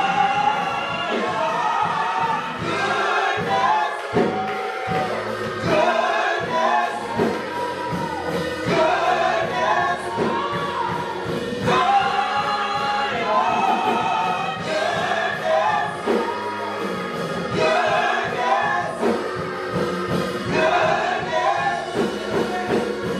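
A live gospel song: a small vocal group of two women and a man sing together in harmony, backed by a church band with drums and organ keeping a steady beat.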